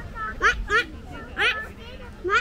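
Canada geese honking: a series of short calls that slide upward in pitch, several of them in quick pairs.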